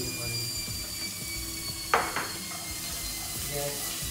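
Spatula scraping chopped green onions off a plate into a pot, with one sharp knock against the cookware about halfway through and a smaller second knock just after it.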